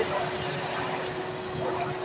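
Steady background hiss and hum of a restaurant dining room, with faint voices near the end.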